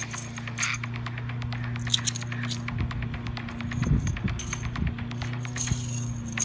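Kung fu spear being whirled and handled: scattered sharp clicks and light metallic jingling, with a few heavier thumps near the middle, over a steady low hum.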